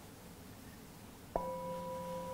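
A metal singing bowl struck once just over a second in, then ringing on with a steady, layered tone. The stroke marks the end of a one-minute meditation period.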